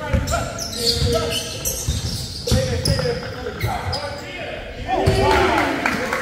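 A basketball bouncing on a hardwood gym floor in a run of dribbles, echoing in the large hall, with players' voices calling out on court.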